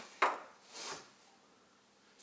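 Plastic push-fit plumbing fittings knocking together and on a wooden bench as one is picked out of a pile: one sharp clack, followed shortly by a brief rustle.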